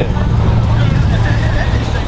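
A car engine running with a steady low drone.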